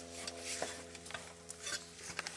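Irregular scraping, rubbing and clicking from a phone being handled and moved about, over a steady low machine hum.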